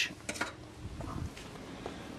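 A few faint, short clicks of something being handled, over quiet room tone.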